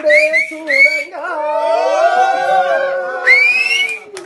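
A man singing a long held note that turns into a wavering, gliding melodic run. Short rising whistles from listeners cut in twice in the first second and once, louder, near the end.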